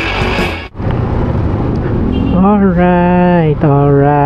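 Intro rock music cuts off under a second in, giving way to the low, steady running noise of a Honda Click 125i scooter riding in traffic. From about halfway, a man's voice holds two long, drawn-out notes over it.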